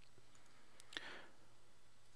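Two faint computer-mouse clicks about a second in, a fraction of a second apart, over a low steady room hum.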